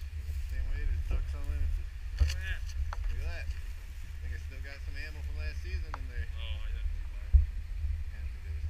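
Low, steady rumbling handling noise from a chest-worn camera as its wearer moves about, under faint, indistinct voices. There is a thump about two seconds in and a sharper, louder knock near the end.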